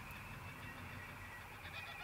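A pause in speech: only faint, steady background hum with a thin high tone, with no distinct sound event.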